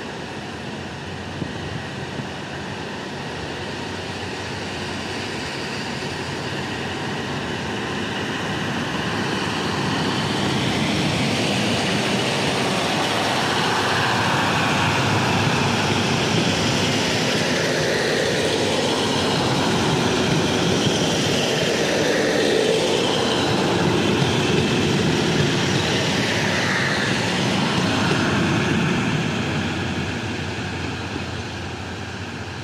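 KiHa 183 diesel multiple unit passing close by: its diesel engines and its wheels rolling on the rails grow louder as it comes up, stay strong as it goes past, and fall away near the end.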